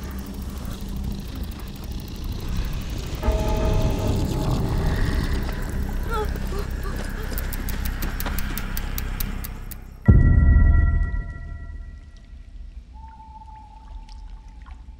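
Dark horror film score and sound design: droning, rumbling synth layers build with a fast ticking over them, then a sudden loud low boom hits about ten seconds in and dies away, leaving a few quiet held synth notes.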